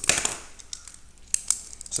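A sheet of paper rustling as it is handled on a desk, loudest right at the start, followed by two sharp clicks of a pen being taken up about a second and a half in.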